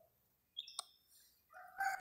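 Faint distant bird calls in near quiet: a short high chirp about half a second in, a sharp click just after, and a short pitched call near the end.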